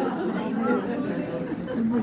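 Audience chatter: several voices talking over one another in a hall, calling out.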